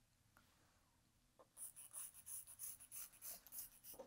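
Faint scratching of a fabric marker drawn across fabric along a clear ruler, in quick short strokes starting about a second and a half in.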